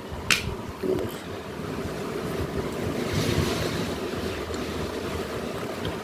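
Soft rushing, wind-like noise of a phone's microphone being handled and moved, with a single click near the start and the rushing swelling briefly around the middle.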